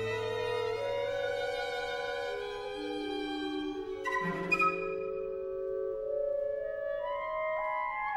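Contemporary chamber ensemble music: long, overlapping held notes that move slowly from pitch to pitch, with a brief sharp accent about four and a half seconds in.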